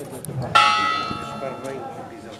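A single strike of a church bell about half a second in, ringing and fading away over about a second and a half.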